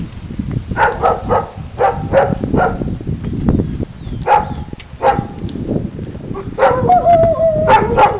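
Dog barking in short repeated bursts, then giving one longer, wavering drawn-out cry near the end.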